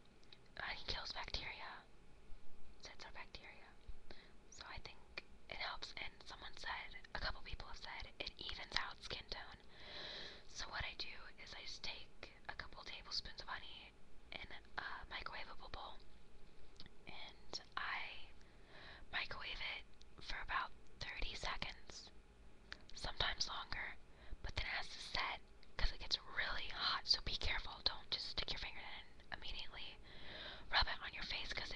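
Whispered speech: a woman talking continuously in a whisper, with short pauses between phrases.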